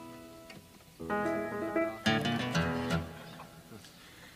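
Guitar played between takes in a recording studio: a chord rings out and fades, then a short figure of plucked notes comes in about a second in, with heavier low notes about two seconds in, each left to ring and die away.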